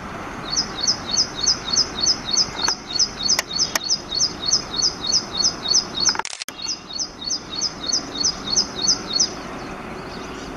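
Ashy prinia singing: a long, even series of sharp repeated notes, about three a second, with a brief break about six seconds in, the song stopping shortly before the end.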